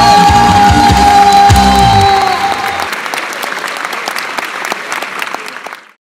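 A song ends on a long held note over a drum beat. About three seconds in, the music stops and audience applause follows, cutting off abruptly just before the end.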